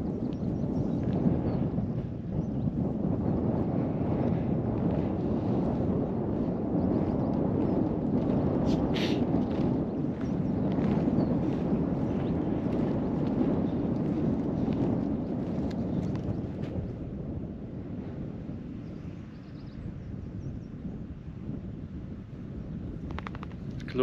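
Wind buffeting the camera's microphone: a steady low rumble that eases off in the last several seconds. A couple of brief clicks come about nine seconds in.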